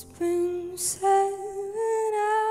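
A woman singing a slow ballad: a short note, then a long held note that wavers slightly, over a soft keyboard accompaniment.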